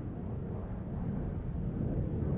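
Wind rumbling on a small onboard camera microphone, growing slowly louder, with a faint steady high-pitched whine underneath.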